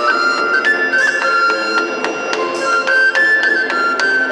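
Three-hole pipe playing a high melody with quick ornamental turns, while a tabor drum is struck in rhythm by the same player. A wind orchestra accompanies it with sustained lower notes.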